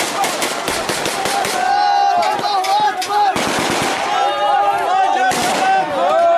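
Bursts of rapid automatic gunfire: a fast string of shots over the first second and a half, then shorter bursts a little past halfway and near the end, with men shouting in between.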